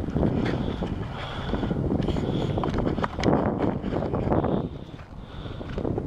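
Wind buffeting the camera microphone: a low, gusty rumble that swells and drops unevenly, easing somewhat near the end.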